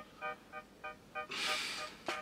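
Background music: a quick pattern of short, bright repeated notes, about four a second, with a hiss-like swell of noise rising in the second half.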